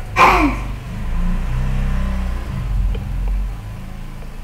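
A low, engine-like rumble that rises and falls in pitch, with a brief sound gliding down in pitch just after the start.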